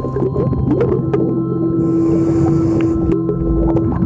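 Underwater sound around a diver: a steady hum, scattered clicks, and a rush of exhaled regulator bubbles about midway.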